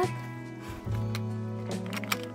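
Background music with held low bass notes and sustained pitched tones, with a few light clicks over it.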